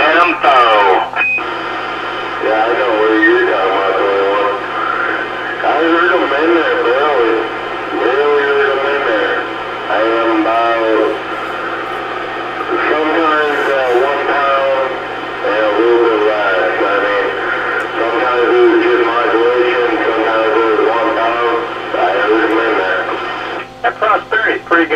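Another operator's voice coming in over a CB radio's speaker: narrow, tinny speech over a steady hum and static.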